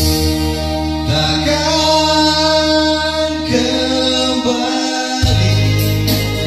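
A man singing into a microphone over electronic keyboard accompaniment, holding long sustained notes.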